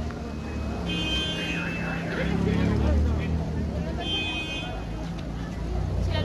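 Street noise: a vehicle engine running close by, swelling a few seconds in, under people's voices, with two short high-pitched tones about three seconds apart.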